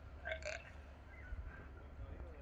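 A seal gives one short, throaty grunt, burp-like, over faint low background rumble.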